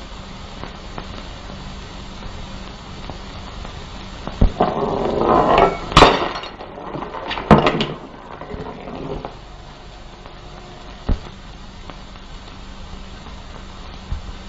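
Steady hiss and hum of an old optical film soundtrack, broken by a few faint knocks and a brief rustling swell about four to six seconds in.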